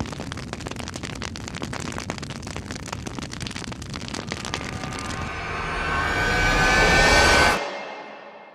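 Intro sound effects for a flaming logo: a dense crackling of fire, then a rising swell that grows louder and cuts off abruptly about a second before the end, leaving a fading tail.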